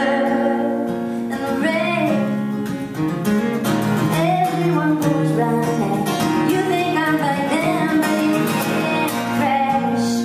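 Acoustic guitar strummed steadily, with a woman singing phrases over it that come and go.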